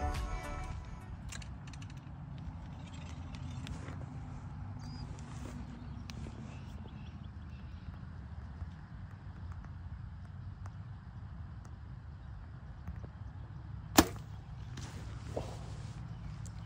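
A steady low outdoor rumble, then about 14 seconds in a single sharp, loud crack from a compound bow being shot, followed a second later by a fainter click. Background music fades out in the first second.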